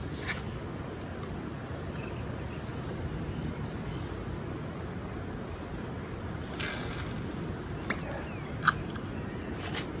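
Steady low outdoor rumble of wind, with a faint click just after the start, a short rasp about two-thirds of the way through and a few faint clicks near the end from a spinning rod and reel being cast and handled.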